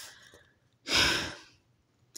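A reader's single audible breath, like a sigh, about a second in, lasting about half a second.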